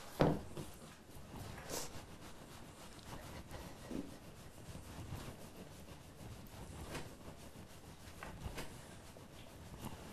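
Rolling pin working a floured sheet of fresh pasta dough, making faint, soft rubbing strokes as the sheet is rolled thinner.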